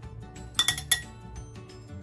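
A quick run of sharp, ringing clinks, a kitchen utensil striking a dish, about half a second to a second in, over background music.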